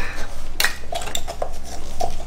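Small pumpkin-carving saws and knives working through pumpkin rind, making a few irregular clicks and scrapes with a light clatter like cutlery.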